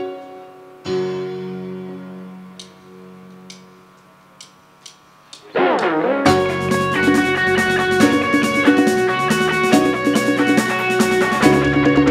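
Live band music: a held keyboard chord fades out over a few seconds with a few light clicks. About six seconds in, after a rising sweep, the full band comes in with drums, guitar and keyboard playing together.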